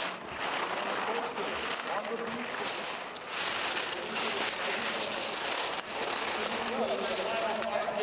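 Ski edges carving and scraping on packed snow, a hiss that swells and fades with each turn, loudest midway. A faint distant voice sits underneath.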